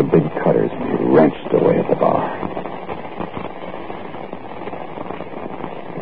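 Brief, indistinct voices in an old, band-limited radio recording during the first two seconds, then a quieter stretch of steady hiss with faint crackle.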